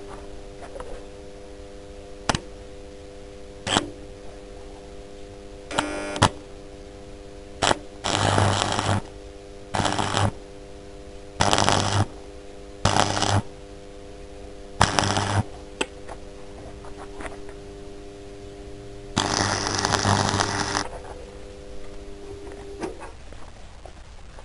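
Electric arc welder tack-welding three steel nuts together: six short bursts of arc crackle, the last and longest about a second and a half, with a few sharp clicks before them. A steady hum runs underneath and stops near the end.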